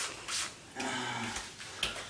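Hands scrubbing shampoo into a wet dog's coat in a bathtub: a few short wet swishes and rubbing sounds, with a light knock near the end.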